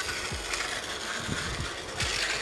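Battery-powered plastic toy car running, a steady whirr of its small motor and gears.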